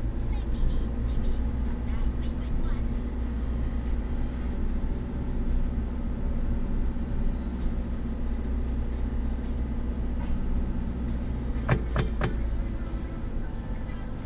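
Car driving slowly, heard from inside the cabin: a steady low drone of engine and road noise. Near the end come two or three sharp knocks close together.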